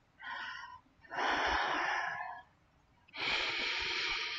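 A woman breathing audibly: three breaths with no voice in them, a short one near the start, then two longer ones of over a second each.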